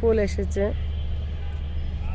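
Steady low rumble of road traffic, with a brief voice over it in the first part.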